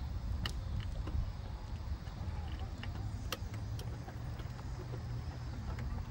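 Unsteady low rumble of wind and handling noise on a handheld phone microphone carried while walking, with a few light sharp ticks.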